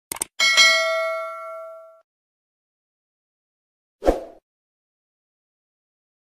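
Subscribe-button sound effect: a quick mouse click, then a bright bell ding that rings out and fades over about a second and a half. A short, sharp thump follows about four seconds in.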